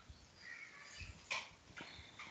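A few faint, short animal calls picked up on a call participant's microphone, one louder and sharper just over a second in.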